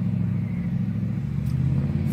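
Steady low drone of an idling engine, even in pitch and level throughout.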